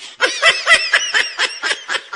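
High-pitched laughter: a quick run of short 'ha' notes, about six a second, loudest in the first second and then trailing off.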